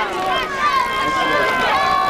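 Overlapping shouts and calls from voices at a football game, some held for about half a second, picked up by the camcorder during the play.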